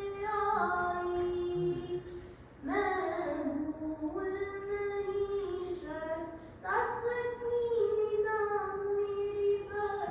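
A child singing an Urdu noha, a mourning lament, unaccompanied, in long held, gliding phrases, pausing briefly for breath twice.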